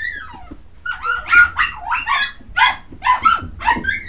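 English Cocker Spaniel puppies whining and yipping: a falling whine, then a run of about five high calls in quick succession, each bending in pitch.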